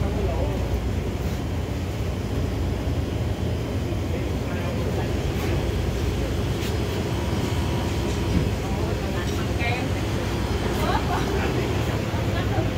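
Busy shop ambience: a steady low rumble with indistinct voices of other people, which come up more in the last few seconds, and a few light knocks.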